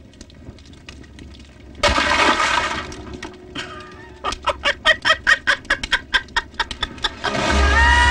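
A man laughing loudly and maniacally. A long drawn-out burst of laughter starts about two seconds in, followed by a rapid run of 'ha-ha-ha' pulses, about five a second. Music comes in near the end.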